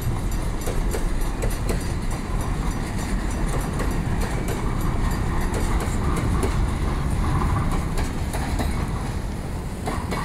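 Loaded container flatcars of a freight train rolling past at close range: a steady rumble of steel wheels on the rails, with irregular clicks as the wheels cross rail joints.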